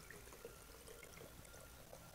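Liquid being poured from a glass jar through a small funnel into an aluminium spray bottle: a faint, steady trickle.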